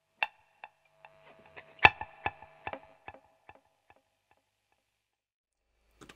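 Electric guitar picking a single note, then a short phrase of notes, through a slapback delay feeding a longer delay: each note is followed by a quick slap, and that slap is itself repeated by the longer delay. The repeats trail off about four seconds in.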